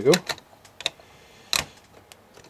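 Plastic LEGO bricks clicking and knocking as hands pull at a section of a built model, a few sharp clicks and one louder knock about one and a half seconds in.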